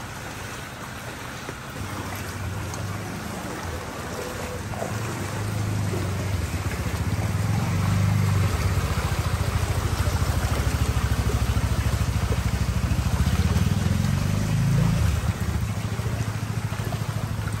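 Small motor scooter engine running as it rides through shallow floodwater, growing louder over the first several seconds and staying loud until shortly before the end, over a steady hiss of moving water.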